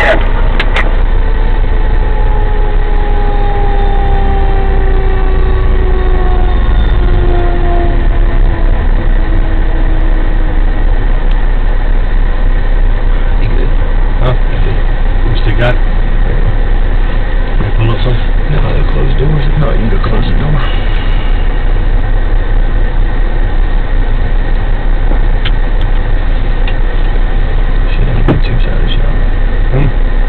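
A fire engine's siren winding down: one steady falling tone that glides lower and fades over the first ten seconds or so, as a mechanical siren spins down after being switched off. Under it and afterwards there is a steady low idling rumble from the stopped vehicles, with a few sharp clicks.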